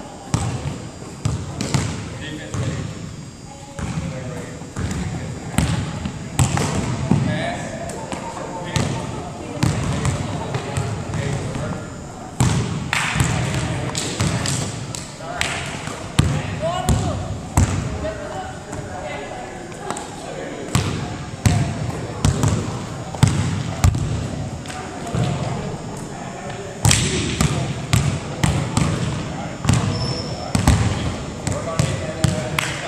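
Basketballs bouncing on a hardwood gym floor: irregular thuds throughout, with no steady rhythm. Indistinct voices of players talking underneath.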